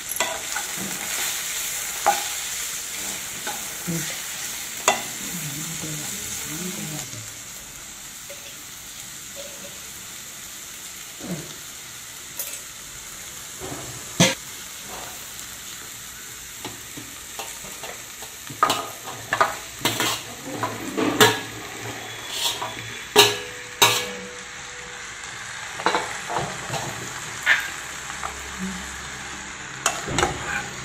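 Onion, tomato and green chillies sizzling in oil in a non-stick kadai while a steel spatula stirs them, the sizzle louder for the first few seconds. Over the last third, a quick run of sharp knocks and scrapes in the pan.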